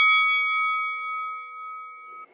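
A bell-like chime ringing out and slowly fading, several clear tones dying away together.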